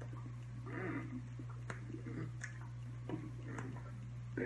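A man's soft mouth noises and breathy vocal sounds as he mouths along while signing, with a few sharp clicks. A steady low hum runs under them.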